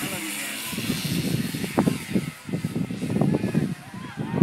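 Formosa II radio-control model airplane's motor running steadily at takeoff, its tone fading within the first second as the plane moves away. After that comes irregular low rumbling noise.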